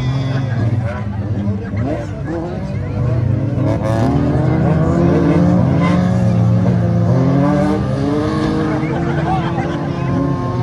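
Several stock cars with engines of up to 1800 cc racing on a dirt track, their engines revving up and down in overlapping pitches as they accelerate and lift through the turns.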